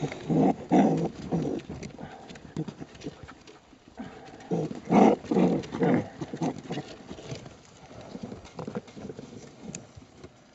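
Baby raccoons crying in quick repeated calls, in two bouts: the first near the start, and a louder one from about four and a half to six and a half seconds in.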